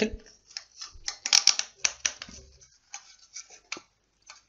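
Hard plastic clicking and knocking as a white plastic ring is pushed over the brass threaded inlet of a tap. The small clicks come irregularly and are thickest in the first half, with a few more near the end.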